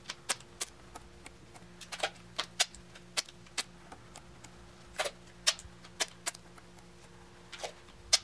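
Duct tape being torn into small strips and stuck onto a wooden table edge: short, sharp tearing and tapping sounds at irregular intervals, a dozen or so.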